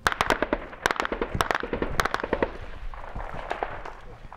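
Small-arms gunfire in a firefight: a rapid, irregular run of sharp shots over the first two and a half seconds, then echoing rumble with a few fainter shots.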